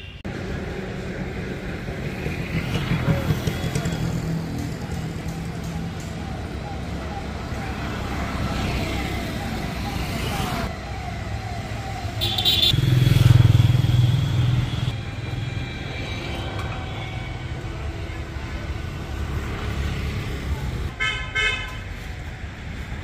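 Road traffic: engines of passing vehicles with horns tooting. A short horn comes about twelve seconds in, followed by the loudest vehicle passing, and another horn sounds near the end.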